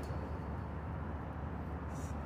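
Steady low background rumble with no distinct clicks or knocks.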